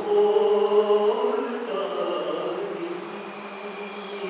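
A man's voice chanting in long, drawn-out melodic notes through a microphone, the pitch stepping down about a second in and again shortly after.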